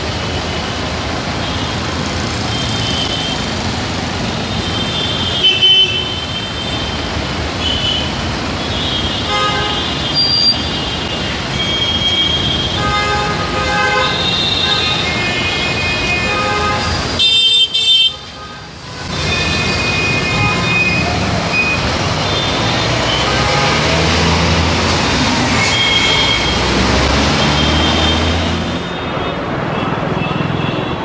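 Busy city street traffic with buses and cars moving past and many short vehicle horn toots throughout. A brief loud knock comes just past the middle, and a heavy bus engine rumbles close by in the second half.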